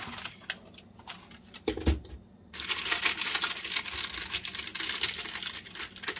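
A few light, hollow clicks of dried maraschino cherries knocking together in a hand, with one soft knock, then about three seconds of crinkling rustle as the lined trays of a small food dehydrator are handled. The clicking is the sign that the fruit is drying hard as it cools.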